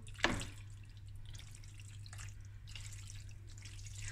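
Metal spatula mixing saucy macaroni and prawns in a metal oven dish: soft, wet squelching and dripping, with one sharp knock near the start.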